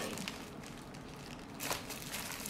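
Plastic courier mailer bag rustling and crinkling as it is handled, with one short, sharper crinkle near the end.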